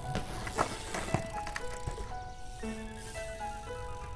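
Background music: a melody of held notes stepping between pitches. Two sharp knocks stand out, about half a second and a second in.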